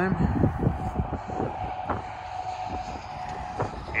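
Outdoor background noise: a faint steady drone, with an irregular low rumble on the microphone.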